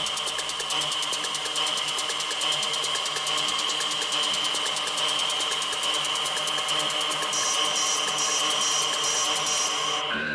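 Electro track played over the club system in a breakdown: the kick and bass are cut, leaving a fast, buzzing synth pattern over a held high tone. A brighter high layer joins about seven seconds in.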